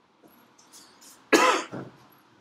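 A person coughing once, sharply and loudly, about a second and a half in.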